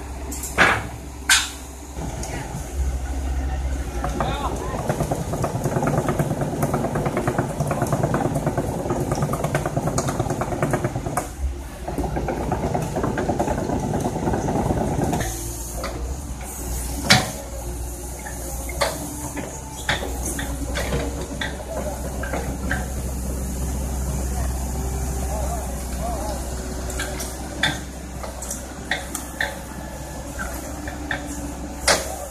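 Sharp metal clanks as steel loading ramps are set on a tow truck's flatbed, then a heavy machine's engine running with people talking over it, and another loud clank partway through.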